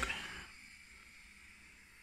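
Faint steady hiss of a gas hob burner on high heat under a pan of water that is starting to bubble.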